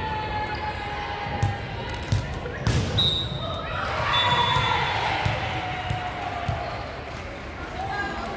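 Volleyball bouncing and thudding on a hardwood gym floor, with voices calling out in long drawn-out tones that echo around the gym.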